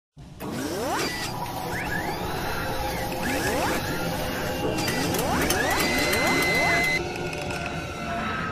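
Mechanical whirring sound effects, like robotic servos. Three whirs rise in pitch over a busy mechanical bed, and the last settles into a held high tone that cuts off about seven seconds in.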